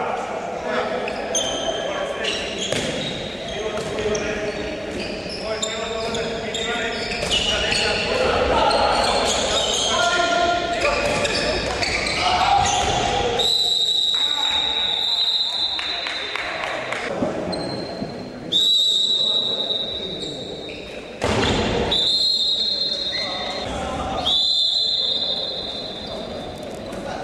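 Handball game in a sports hall: the ball bouncing on the wooden court, with players' shouts. From about halfway, four long, high whistle blasts of about two seconds each.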